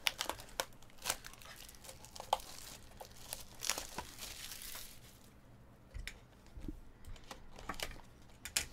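Clear plastic shrink wrap being torn and crumpled off a box of trading cards: crinkling and crackling for about five seconds, then quieter, with a couple of soft knocks as the box is handled.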